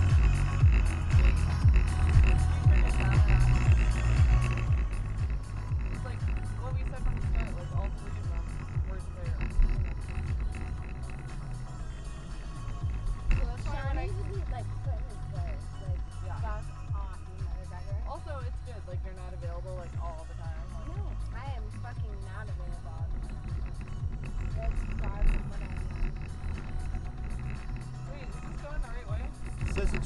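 Music with a pulsing bass beat playing on the car's stereo inside the cabin, with a singing voice in the middle part. It is louder for the first few seconds, then settles lower.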